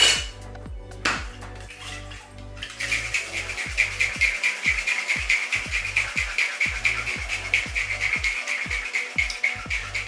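A cocktail shaker tin knocked down onto its mixing glass to seal it, a second knock about a second later, then from about three seconds in a rapid, even rhythm of a dry shake: an egg-white sour shaken without ice. Background electronic music with a steady bass line plays throughout.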